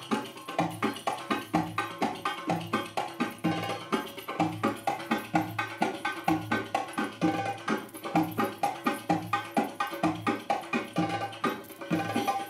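Belly-dance drum music: hand drums playing a quick, steady rhythm of strikes.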